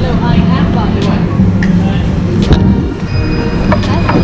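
People talking at a restaurant table over a steady low rumble of room noise, with a few sharp clicks or knocks scattered through it.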